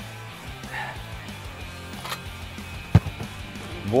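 Quiet background music with steady low tones, and about three seconds in a single sharp thump of a football being struck.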